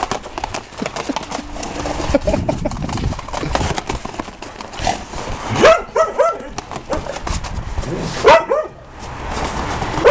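Rubber-soled dog boots on two Vizslas clattering on brick pavers as the dogs run and scuffle, a quick patter of footfalls that sounds like horses. Sharp barks break in a little past halfway and again near the end, the loudest sounds here.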